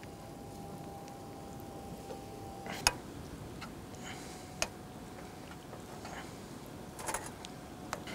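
A few sharp, light clicks of a metal utensil against a stainless steel frying pan as greens are stirred into the sauce. They come a second or two apart, with a short cluster near the end, over a faint steady background.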